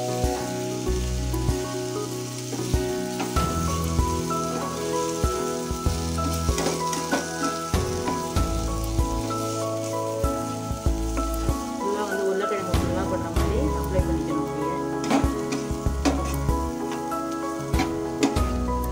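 Cubed potatoes frying in oil with spice powder in a nonstick pan, sizzling, with the scattered clicks and scrapes of a spatula stirring and turning them. Background music with sustained tones and a repeating bass plays throughout.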